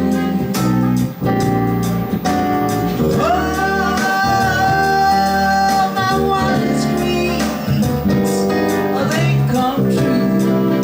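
Live jazz band: a woman singing through a microphone over electric bass guitar and a Roland BK-5 keyboard, with a steady beat. About three seconds in she slides up into a long held note that lasts until about six and a half seconds in.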